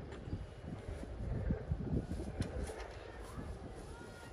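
Wind buffeting the microphone as an uneven low rumble, with a light knock of lumber about two and a half seconds in as the wooden deck frame is lowered onto its beams.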